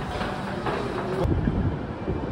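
Echoing subway-passage ambience with footsteps and a low rumble. About a second in, an abrupt change to wind buffeting the microphone.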